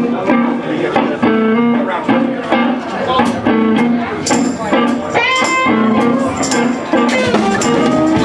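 Live band playing amplified: an electric guitar riff over bass and drum kit, with cymbals coming in strongly about four seconds in.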